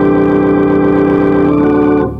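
Organ holding a full D major chord, the 'one' chord that resolves the preacher-chord progression home. Some upper notes shift about one and a half seconds in, and the chord is released at the very end.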